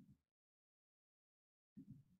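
Near silence, broken twice by a brief faint sound, once at the start and once near the end.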